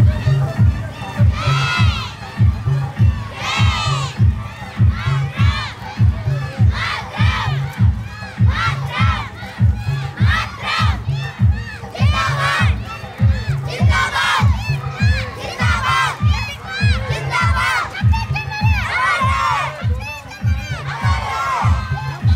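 A crowd of schoolchildren shouting slogans together while marching, their calls rising and falling in repeated rounds. Under the voices runs a steady low beat, about two to three strokes a second.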